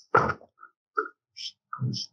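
Brief wordless vocal sounds from a man: a short grunt just after the start and another low hum near the end, with a few faint clicks in between.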